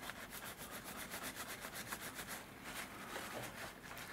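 Dry kitchen paper towel rubbed quickly back and forth over a small copper-plated PLA figure, buffing it with no polish: a faint, fast rustling scrub of many short strokes a second.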